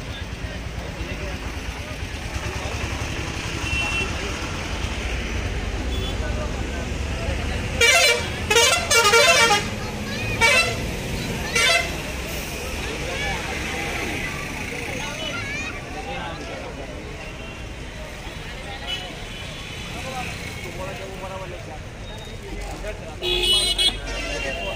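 Vehicle horn honking in about four loud blasts with a wavering pitch, from about eight to twelve seconds in, over the steady chatter and bustle of a crowd. Another short loud burst comes near the end.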